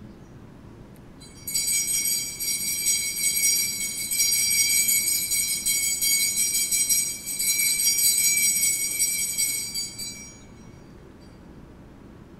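Altar bells shaken in a continuous high, jingling ring that starts about a second and a half in and stops about ten seconds in. They mark the elevation of the chalice after the consecration at Mass.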